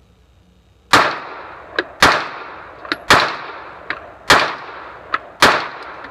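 Five pistol shots from a 9mm Springfield Armory XDM, fired at a steady pace about a second apart, each with a decaying echo, and fainter ticks between the shots.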